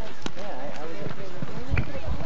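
A horse galloping on a dirt arena, its hoofbeats growing into heavy thuds near the end as it comes close, with people's voices calling out.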